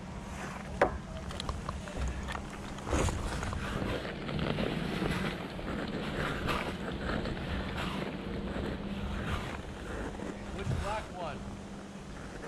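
Rustling and footsteps through long grass with wind on the microphone, over a steady low hum; a single sharp click stands out about a second in.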